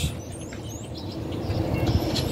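Small birds chirping faintly in short high calls over a steady background noise.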